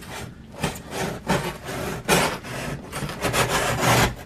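Utility knife blade slicing along a corner of a corrugated cardboard box, an uneven run of short rasping strokes through the board. The corner is being cut down to the creased line so the box can be folded in to a smaller size.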